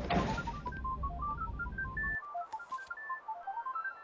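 Electronic theme music made of short beeping tones in a quick stepping melody, about four or five notes a second. A steady rumble and hiss underneath stops abruptly about two seconds in.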